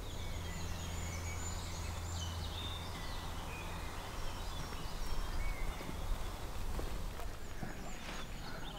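Wild birds singing and calling in woodland, many short high chirps and whistles, over a low steady hum that fades after about four seconds.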